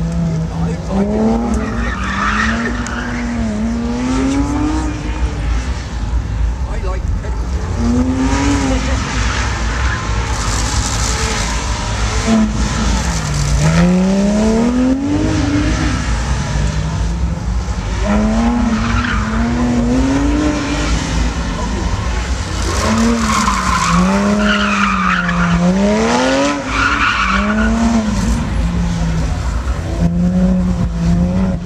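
A car engine revving up and falling back again and again as the car is driven hard through tight turns, with tire squeal in the corners, most clearly about two seconds in and again for several seconds near the end.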